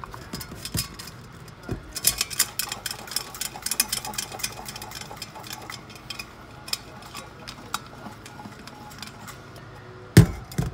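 Handling of a stainless steel Stanley thermos bottle in a steel sink. A run of small clicks and light knocks comes as its plastic lid is twisted on and the bottle is moved about, thickest from about two to five seconds in, then sparser.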